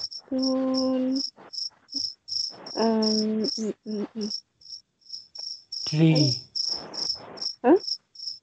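Crickets chirping steadily, a high pulse about three times a second, under a person's voice saying a few drawn-out words.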